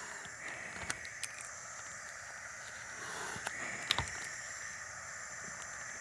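A few faint plastic clicks and taps as a prefilled naloxone vial is threaded into its syringe injector, the sharpest about four seconds in, over a low steady hiss.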